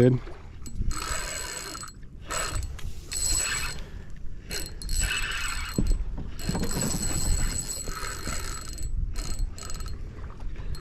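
Spinning reel working in spurts as a hooked redfish is fought on a bent rod: several stretches of whirring, a second or two each with a steady high whine, broken by short pauses.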